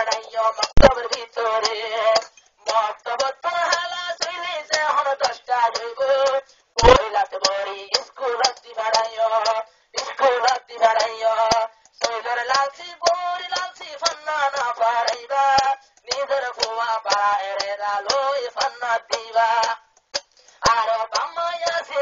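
A man's voice singing a Rohingya tarana in phrases with short breaks between them. Two sharp low thumps come about a second in and about seven seconds in.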